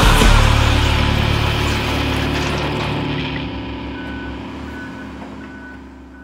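A low, steady rumble fades away gradually. A faint reversing alarm beeps about twice a second over the last two seconds, the backup warning of heavy equipment.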